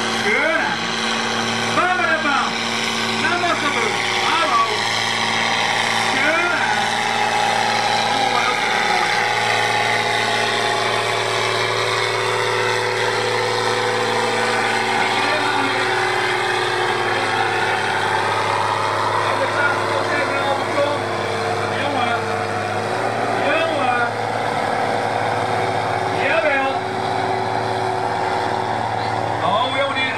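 Farm tractor's diesel engine running steadily at the end of a sled pull, its pitch sinking and then rising again in the middle. Voices in the background.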